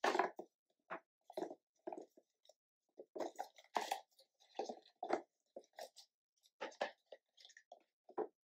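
Candies being put into a small cardboard gift box by hand: a string of short, irregular rustles and taps.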